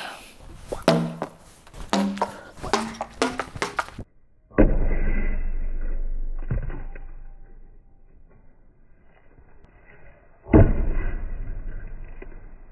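A thrown ball strikes a cabinet door hanging from hinge-hole hooks on a wave hanger. There is a sharp impact about four and a half seconds in, a smaller knock about two seconds later, and another sharp impact near the end. Each hit is followed by a ringing that fades over a few seconds as the door swings on its hooks.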